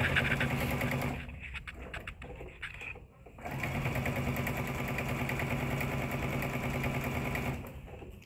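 Electric sewing machine stitching a quarter-inch seam down a fabric bag handle. It runs steadily for about a second, stops for about two seconds, then runs again for about four seconds and stops near the end.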